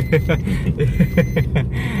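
A man laughing in a quick run of short bursts inside a moving car's cabin, over the steady low rumble of the engine and road.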